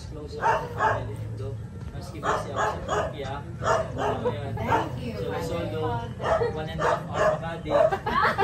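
A group of people talking among themselves, the words unclear, in several short stretches.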